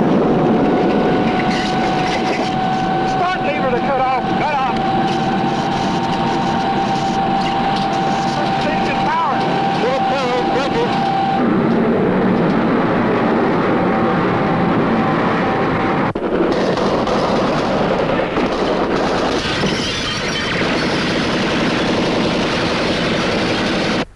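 Jet engine noise of a B-52 bomber in flight, loud and continuous, with a steady high tone over it that stops about halfway through.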